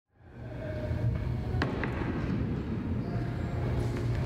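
A steady low rumble fades in at the start, with two sharp clicks about a second and a half in.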